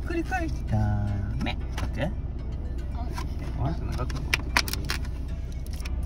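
Steady low rumble of the van's idling engine heard from inside the cabin, with the crinkle of a plastic food pack being handled and two sharp clicks a little past the middle.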